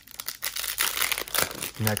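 The wrapper of a trading-card pack crinkling and tearing as it is ripped open by hand, a run of dense crackles.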